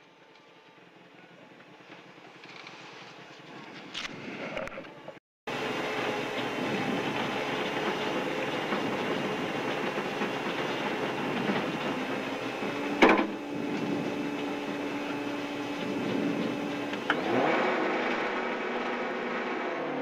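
Engine of a Subaru Impreza WRX STi rally car, a turbocharged flat-four, heard from inside the cabin at low speed. It fades up over the first few seconds and cuts out briefly about five seconds in, then runs steadily with a sharp knock about two-thirds of the way through.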